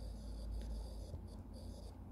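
Stylus tip scratching across a tablet screen in short handwriting strokes, faint.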